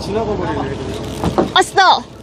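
People's voices on a fishing boat, with a loud, high exclamation near the end, over the steady hum of the boat's engine running.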